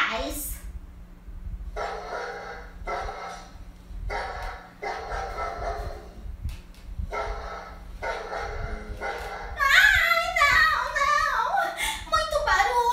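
A dog's barking voiced for a hand puppet: three pairs of rough, drawn-out barks, each pair about a second long. Near the end comes a woman's loud, high, excited voice.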